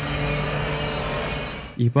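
Steady street traffic noise with a vehicle engine running at an even low hum.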